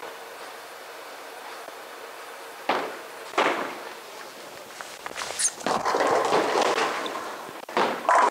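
Footsteps on a bowling approach, two sharp knocks about three seconds in, then a solid-cover reactive bowling ball (Storm Super Nova) rolling down a bowling lane. Its rolling rumble grows louder over the last few seconds.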